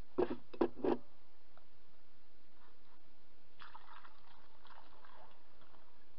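Rosehip syrup being poured through a funnel into a glass bottle: faint liquid trickling from about three and a half seconds in.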